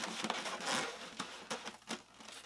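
Rubbing and scraping of a large polystyrene foam shipping box as it is gripped and shifted, in short, uneven bursts with a few knocks.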